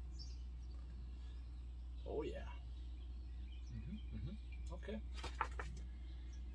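A paper instruction booklet being handled and closed, with a few sharp paper clicks about five seconds in, over a steady low background hum. A short murmur comes about two seconds in.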